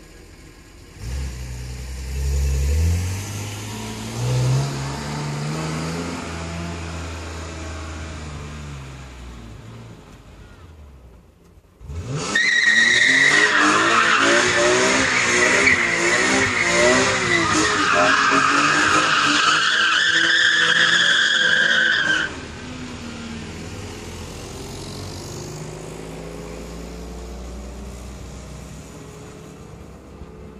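BMW M3 E46's 3.2-litre straight-six accelerating with climbing revs, then fading. About twelve seconds in, the rear tyres break into a loud, continuous squeal for about ten seconds as the car spins donuts, the engine revs wavering underneath. The squeal cuts off suddenly and the engine runs on more quietly.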